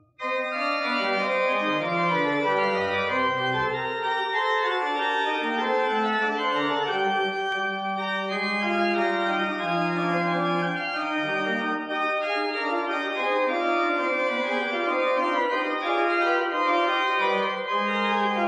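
Pipe organ playing full, sustained chords over a moving bass line, coming in abruptly right after a momentary break and then sounding at an even level.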